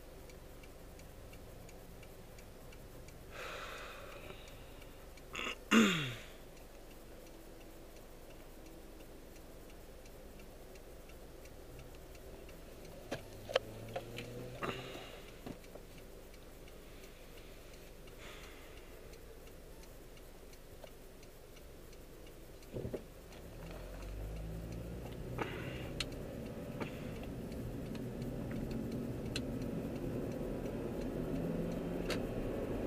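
Car engine heard from inside the cabin, idling quietly while the car waits at an intersection. About six seconds in comes a brief loud sound with a falling pitch, and there are a few sharp clicks later. In the last several seconds the engine runs louder as the car pulls away.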